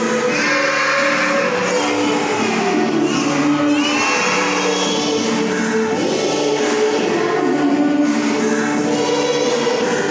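A group singing a slow song with music, a melody of long held notes that step from one pitch to the next without a break.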